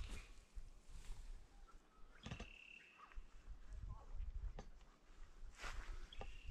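Faint outdoor quiet over marshland: a low rumble with a few soft clicks or rustles, and a bird's single steady whistled note lasting about a second, starting about two seconds in.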